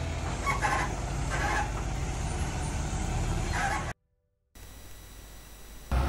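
A heavy Mercedes-Benz truck's diesel engine running with a steady low rumble. The sound cuts off abruptly about four seconds in, leaving a quieter, steady outdoor background.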